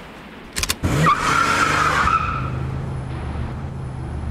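A few sharp clicks from a rifle being handled, then an Aston Martin DBS's engine running as its tyres skid across sand, leaving a steady engine note.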